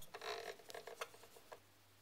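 Very faint room tone with a low steady hum and a few tiny ticks about a second in, close to silence.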